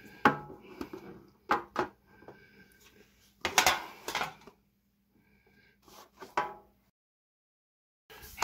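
Thin metal trading-card tin being handled and opened: a few sharp clinks and knocks of the tin lid, then a longer rattling scrape in the middle as the card box inside is lifted out. The sound cuts off abruptly near the end.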